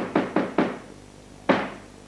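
The French theatre's traditional 'trois coups' before the curtain rises: a wooden staff rapped quickly on the stage floor, the fast run stopping about half a second in, then the first of the slow, single, louder strikes near the end.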